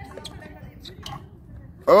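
Faint outdoor background with low, distant voices, then a man's voice speaking up loudly near the end.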